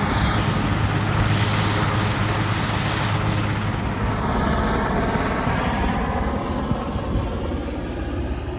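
Aircraft engine running steadily: a loud drone with a hiss over it, easing a little over the last couple of seconds.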